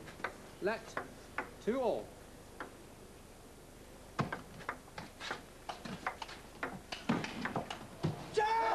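Table tennis ball clicking off the bats and the table in a long, irregular rally, with a pause of about a second and a half midway and a quicker run of hits in the second half. Two short pitched squeals come in the first two seconds.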